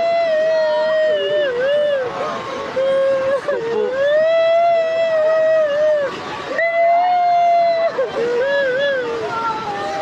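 A person's high-pitched voice in long, drawn-out wailing cries, each held a second or two with the pitch dipping and breaking at the ends, over a steady rush of noise from the surging floodwater.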